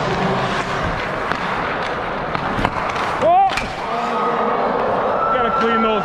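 Ice hockey game heard from a goalie's helmet-mounted GoPro: skate blades scraping the ice, a few sharp stick and puck clacks, and players' voices, with a loud shout about three seconds in. Steady music tones come in during the last two seconds.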